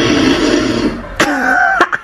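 A person laughing: breathy, rasping bursts, then a short higher-pitched voiced stretch just over a second in.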